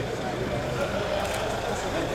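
Citroën police van's engine running with a low steady hum as the van drives slowly past close by, over a murmur of people talking in the street.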